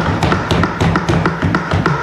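Many hands thumping on wooden desks in a fast, irregular patter of knocks: parliamentary desk-banging in approval at the end of a speech.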